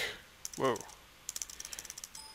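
Computer keyboard keys tapped in a quick run of about a dozen clicks in the last second, clearing a typed console command.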